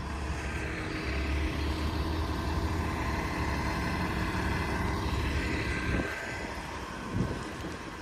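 City transit bus running at a stop: a steady low engine rumble with a steady whine above it, easing off about six seconds in.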